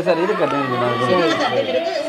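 Voices talking.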